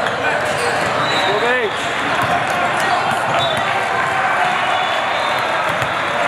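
Busy indoor volleyball hall: steady chatter of many voices, with repeated thuds of volleyballs bouncing and being struck across the courts and a brief pitched squeak or call about one and a half seconds in.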